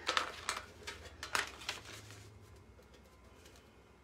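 A few brief crinkles and rustles in the first couple of seconds as the backing sheet is peeled off a rub-on decor transfer.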